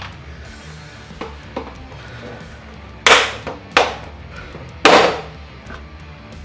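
Plastic retaining tabs of a Lexus GX470's running board cracking and popping as they are levered out with a plastic trim removal tool, with at least one tab snapping. There are a couple of light clicks, then three sharp loud cracks about three, four and five seconds in.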